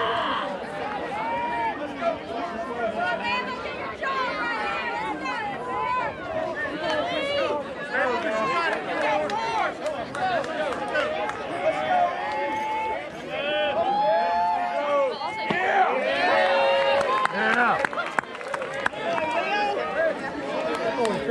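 Spectators chattering: many voices talking at once and overlapping, with no one voice standing out, a little louder and busier in the last few seconds.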